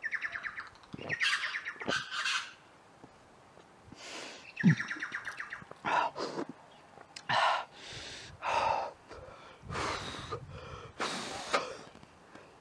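A man breathing hard in a string of heavy breaths and gasps after chugging a cup of soda. A bird twitters in two short, quick trills in the background, at the start and about four seconds in.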